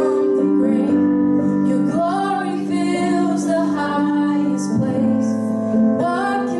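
A woman singing a worship song while accompanying herself on a Roland FP-80 digital piano, her voice gliding between notes over held chords.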